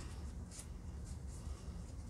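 Faint rustling and a few light taps of plastic stencils and papers being sorted through by hand, over a steady low hum.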